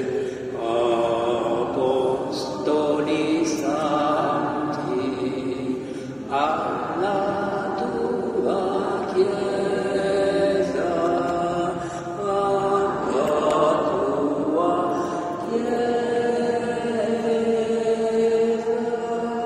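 Slow, chant-like singing: long held notes that move from one pitch to the next.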